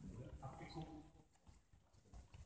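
Faint, indistinct speech from people in the room, trailing off to near quiet about halfway through.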